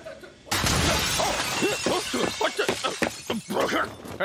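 A glass window shattering about half a second in, as a body crashes through it, with short yelling voices mixed into the crash.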